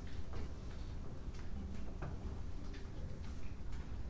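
Room noise of a concert hall in a pause before an orchestra plays: a steady low rumble with scattered small clicks and knocks.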